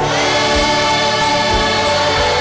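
Gospel worship music: a choir singing held chords over instrumental backing with a steady beat, a new chord coming in at the start.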